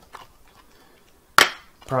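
Plastic Blu-ray case snapping open: one sharp click about one and a half seconds in, followed by a fainter click.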